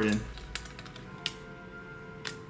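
A few light plastic clicks as the circuit board, with its AA batteries, is pressed into the plastic body of a Kano Harry Potter coding wand: a small cluster about half a second in and one more just after a second. Faint background music runs underneath.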